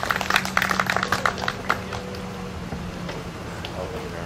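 Crowd applauding with scattered hand claps that die away about two seconds in, leaving a steady low hum.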